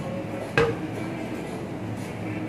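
A single sharp clink with a short ring, over a steady background hum.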